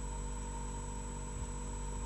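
Steady electrical hum and hiss of the recording's background noise, with no other sound.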